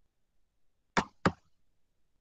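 Two sharp computer mouse clicks about a third of a second apart, about a second in; otherwise near silence.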